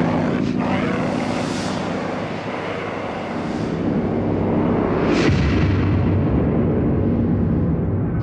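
Dark industrial noise drone played live: a loud rumbling low hum under a dense wash of noise. Swells of noise sweep through about half a second in and again around five seconds, where a deeper low throb comes in.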